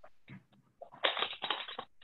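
A short burst of crackling noise about a second in, after a few faint clicks, heard through video-call audio.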